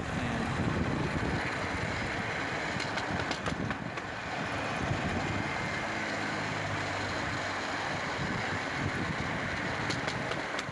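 Steel wheels of a hand-pushed rail trolley rumbling and clattering steadily along the rails as it coasts fast downhill without pushing.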